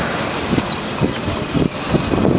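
Steady rumble and rush of a pedicab rolling along a city street in traffic, wind on the microphone included, with a few short knocks as it rides over the road.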